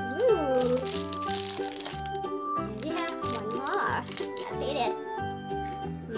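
Children's background music with a steady melody and bass, and a few sliding vocal sounds in it. Over the first two seconds there is a high crinkling from a chocolate bar's foil wrapper being peeled off.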